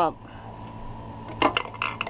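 A short cluster of light clicks and knocks about a second and a half in, from a hand handling the hose and fittings on a 12-volt watermaker's pump, over a steady low hum.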